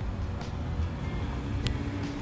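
Low, steady outdoor background rumble with a couple of faint, short clicks.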